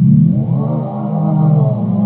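Lofiatron cassette-tape sampler holding one low note played back from tape, its pitch knob turned down so the tape runs slow.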